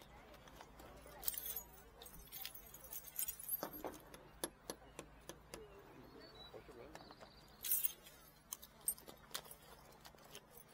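Small metal jewellery, fine chains and rings, being handled so that it clinks and jingles in a run of light, irregular clicks.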